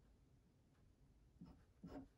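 Faint scratching of a pen nib on paper, a few short writing strokes in the second half.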